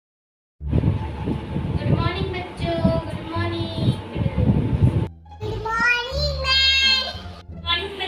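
Silence for about half a second, then a voice singing with long held, wavering notes over a low steady hum, broken by two short pauses.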